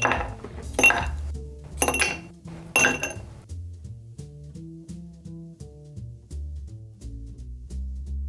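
Ice cubes dropped one by one from tongs into a tall highball glass: three sharp glassy clinks about a second apart. After that, background music with a low, stepping bass line.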